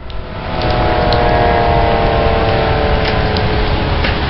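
Strong wind buffeting the microphone with a steady low rumble. Under it, a distant tornado warning siren holds a steady, slightly falling tone.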